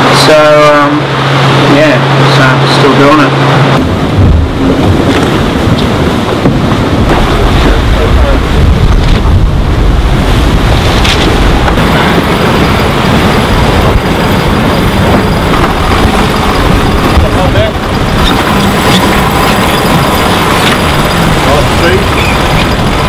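A low steady hum for about four seconds, then a loud, steady rush of wind and water on the open deck of an ocean racing yacht under sail, with wind buffeting the microphone.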